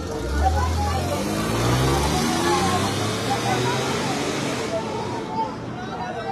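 A motor vehicle driving past close by, its engine rising steadily in pitch as it speeds up, with a deep rumble in the first two seconds; the noise fades away about five seconds in. Crowd voices carry on underneath.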